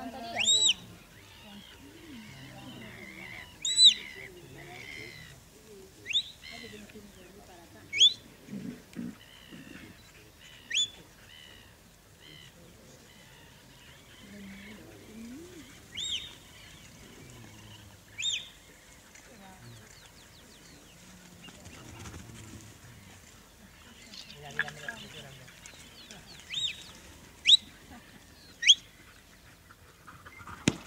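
A dozen or so short, sharp, high whistles at irregular intervals, typical of a shepherd's whistle commands to a working sheepdog, with faint sheep bleats underneath.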